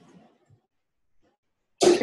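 Mostly quiet room tone, with a faint, brief breath-like vocal noise from the presenter fading out at the start; speech begins near the end.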